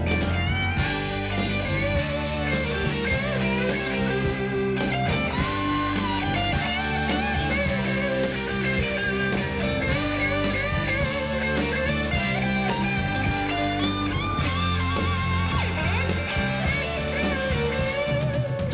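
Electric guitar solo with bent, wavering notes over a live soul band's bass and drums, in an instrumental break between sung verses.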